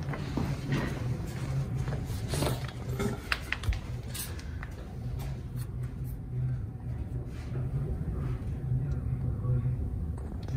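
Handling noise: light knocks and clicks, several in the first four seconds and fewer after, over a steady low hum.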